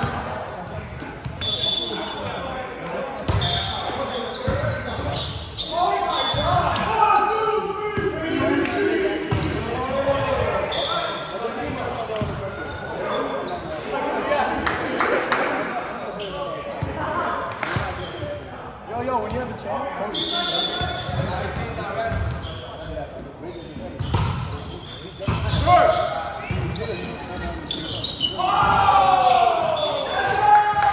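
Indoor volleyball play in a gym: players calling to one another over repeated ball contacts, echoing in the hall, with short high squeaks now and then.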